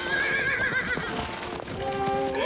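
A horse whinnying with a quavering pitch for about a second, over background music with sustained notes.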